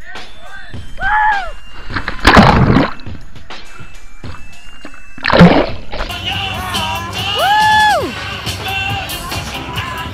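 A person plunging into icy lake water through a hole cut in the ice: a loud rush of splashing water about two seconds in and another about five seconds in, heard over background music.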